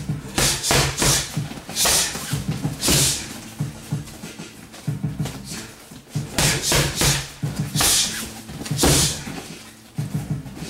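Boxing gloves and a shin striking Muay Thai kick pads: two fast combinations of about five hits each, punches finished by a round kick, a few seconds apart.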